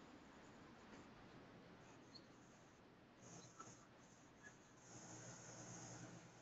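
Near silence: a faint steady hiss with a few soft, brief noises.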